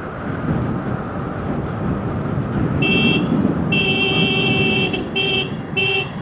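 Vehicle horn honking four times, starting about halfway in, the second blast the longest, over the steady running and road noise of a motorcycle on the move.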